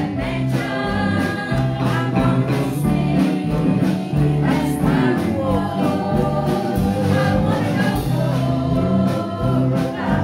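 Live gospel song: women's voices singing over strummed acoustic guitars and piano in a steady rhythm.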